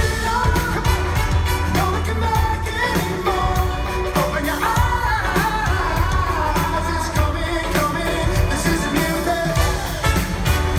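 Live pop-rock band performing with a lead singer: vocals over electric guitar, keyboards, drums and heavy bass, recorded from among the audience in a large hall.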